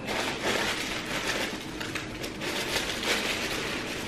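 Rustling and scratching of hands working at a cardboard gift box and its paper seal, trying to open it without tearing the seal.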